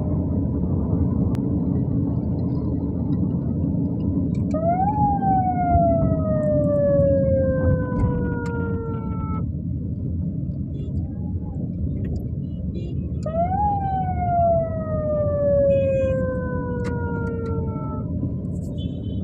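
A siren wailing twice, each wail jumping up quickly and then sliding slowly down over about five seconds. Underneath is the steady low rumble of traffic and the car's engine and tyres.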